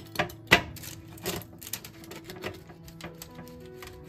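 Pizza wheel cutter rolling through a baked pizza, its crust crunching in quick, irregular crackling clicks, the sharpest about half a second in.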